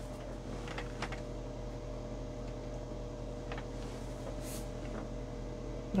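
A few faint, light clicks of metal paint-test spoons being picked up and handled, over a steady low hum.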